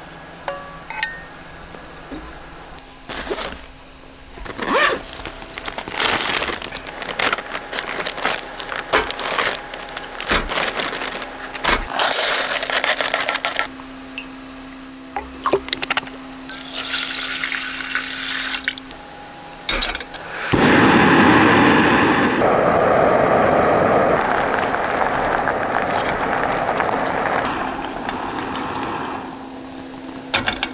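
A steady high-pitched trill of night insects runs throughout, with clicks and clinks of metal camp cookware being handled. About twenty seconds in, a portable gas stove burner is lit under a pot of rice and runs with a loud rushing hiss, which stops near the end when the flame is turned down to low.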